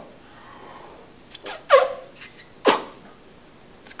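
A man blowing hard into the mouth of a glass milk bottle: a faint rush of breath, then two short, forceful puffs about a second apart, the first with a falling pitch. He is forcing air past a hard-boiled egg lodged in the bottle, raising the pressure inside to push the egg back out.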